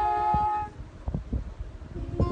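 Voices holding a long sustained sung note with acoustic guitar, cutting off about a third of the way in. Then a stretch of scattered low thumps at a lower level, and a new guitar note starts to ring at the very end.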